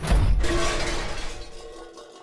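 Cartoon crash sound effect: a sudden loud smash of something breaking, with clattering debris that dies away over about two seconds.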